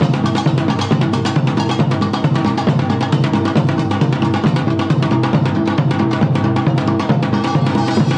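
Seated samulnori ensemble playing at a fast tempo: brass gongs clanging over a hybrid janggu hourglass drum and a buk barrel drum, in dense, rapid, unbroken strokes.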